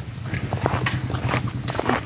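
Footsteps of someone walking on a wet paved road: short, irregular slapping clicks, several a second, over a low steady hum.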